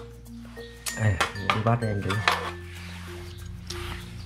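Background music of steady held notes changing pitch every half second or so, with a voice saying a word about a second in.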